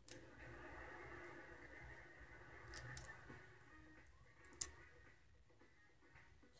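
Near silence in a small room, with faint steady background tones and two light clicks of wooden colored pencils being handled, one near the middle and one later.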